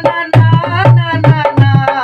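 Hand-played dholak keeping a bhajan rhythm, deep bass-head strokes alternating with sharp treble strokes, while a man's voice carries the tune over it.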